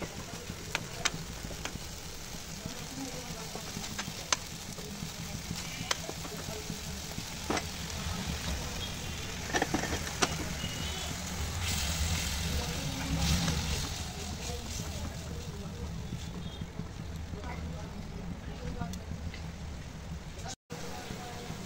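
Tomato and onion masala sizzling in a wok while a wooden spatula stirs it, knocking sharply against the pan now and then. Stirring grows louder for a few seconds past the middle.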